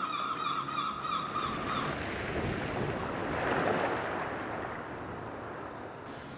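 Sea surf: a wash of a wave swells up, peaks a little past the middle, and dies away.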